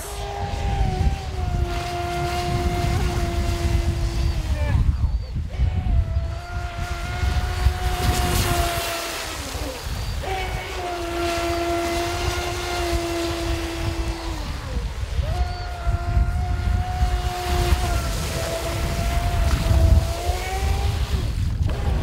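AquaCraft Revolt 30 RC mono boat's brushless motor and propeller whining at full speed on a 4S LiPo, a steady high-pitched whine in about four runs of a few seconds each. The pitch sags at the end of each run as the throttle eases for a turn, with a low rumble underneath.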